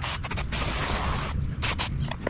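Aerosol can of mass air flow sensor cleaner spraying through its thin extension straw onto a plastic air-box cover: a few short bursts, a steady hiss lasting about a second, then two brief bursts near the end.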